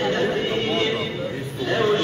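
A man's voice chanting a wavering, drawn-out melody, a religious recitation, with other voices talking underneath; it dips briefly about one and a half seconds in.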